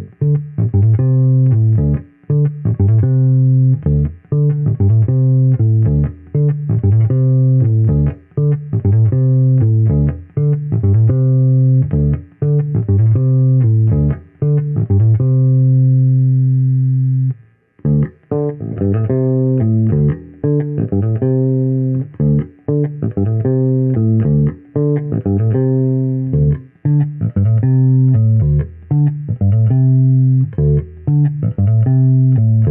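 Epiphone Viola violin-shaped hollow-body electric bass played fingerstyle through an Ampeg B-15N Portaflex amp: a run of plucked notes, with one long held note about halfway through, a brief break, then the line picks up again.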